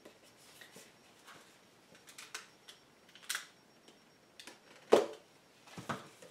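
Handling noise from a small boxed product being turned and moved in the hands: soft rubbing and a few light clicks, then one sharp knock just before five seconds in.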